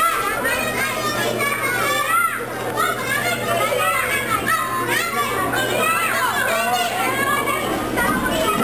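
Many young children's voices chattering and calling out at once, overlapping so that no words stand out.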